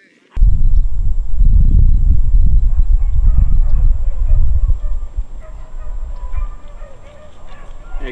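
Wind buffeting the microphone, very loud for the first five seconds, then easing off. Faint, pitched animal calls come through in the quieter second half.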